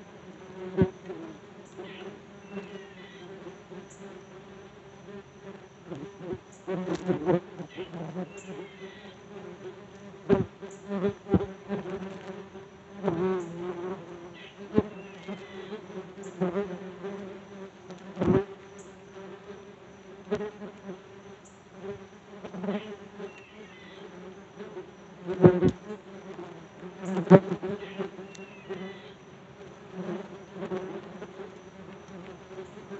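Yellow jackets buzzing around a phone's microphone: a steady low wingbeat hum that swells loudly each time one flies close, with occasional sharp clicks.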